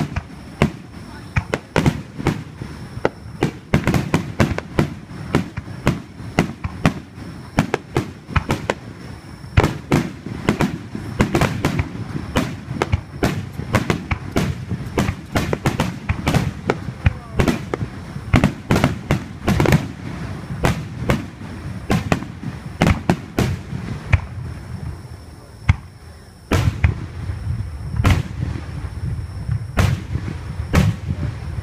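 Aerial firework shells bursting overhead at close range, a rapid run of sharp bangs and crackling. There is a brief lull about 24 seconds in, then a dense volley of deep booms near the end.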